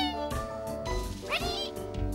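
Cartoon background music with a cartoon animal's cries laid over it: pitched, meow-like calls that sweep up and then down, one just after the middle and another near the end.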